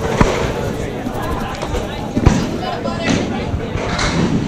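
Two sharp knocks about two seconds apart in a candlepin bowling alley, typical of candlepin balls and wooden pins striking, over background chatter from the crowd.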